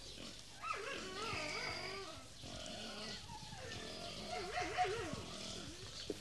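Faint animal calls, wavering in pitch, several in a row, over a steady low hum.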